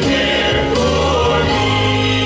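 Traditional male Southern Gospel quartet singing in harmony into handheld microphones, held chords over steady low bass notes.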